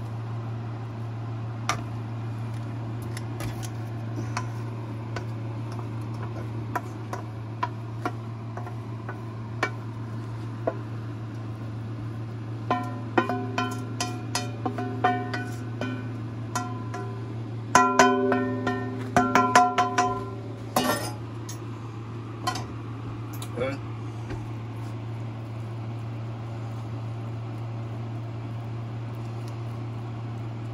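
Wooden spoon tapping and scraping against a stainless steel skillet as sautéed spinach is knocked out into a pie crust: light clicks at first, then two runs of quick knocks in the middle with the pan ringing after each. A steady low hum runs underneath.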